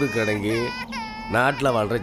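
An infant crying in a high wail that stops within the first second, with a man talking over it.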